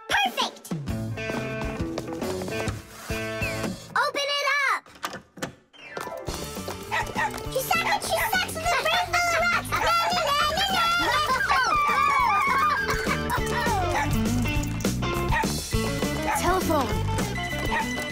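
Cartoon soundtrack music with character voices over it. A short gliding vocal cry comes about four seconds in, then a brief lull, and the music fills out from about six seconds on.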